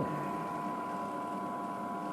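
A steady mechanical hum with a constant high whine, unchanging throughout.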